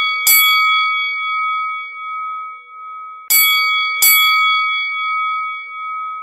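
A bell chime struck in two pairs, the second pair about three seconds after the first. Each strike rings on in a steady, clear tone that slowly fades.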